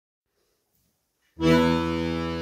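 Piatanesi 34/72 piano accordion (34 treble keys, 72 bass buttons): silence at first, then about one and a half seconds in a full chord starts suddenly and is held.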